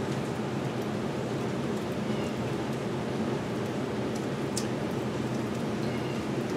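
Air conditioner running: a steady hum under an even hiss.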